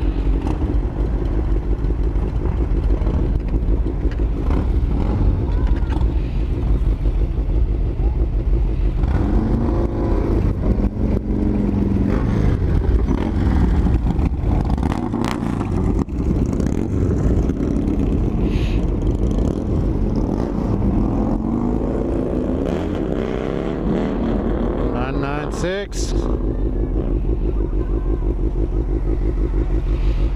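A group of cruiser motorcycles running and pulling away one after another, a steady low engine rumble throughout. The pitch rises and falls as bikes accelerate off, about ten seconds in and again between about 22 and 26 seconds.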